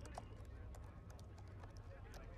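Faint, irregular clicks of keys being typed on a computer keyboard over a low steady hum.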